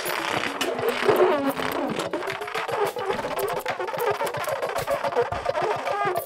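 Live improvised electronic music from a trio of saxophone, electric guitar and laptop electronics. Slowly gliding held tones run over a dense, shifting texture with scattered clicks.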